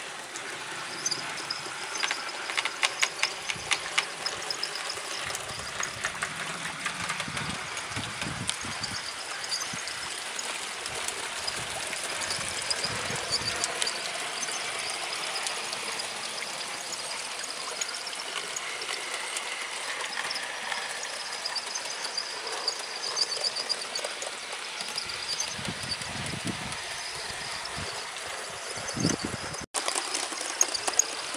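A 7mm-scale model train running along outdoor garden track: a steady rolling rumble of wheels on rail, with a run of quick clicks about two to four seconds in as the wheels cross rail joints.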